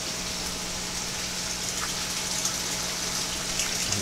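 Water running steadily through an aquaponic grow-bed system, a continuous rushing and trickling with a low steady hum underneath.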